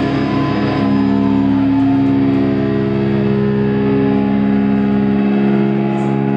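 Distorted electric guitars holding a sustained chord that rings steadily through the amplifiers, with no drums, after a crash; the lowest note shifts near the end.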